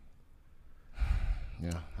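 A man's sigh or sharp exhale about a second in, the breath blowing onto a close microphone and making it rumble, after a moment of near silence.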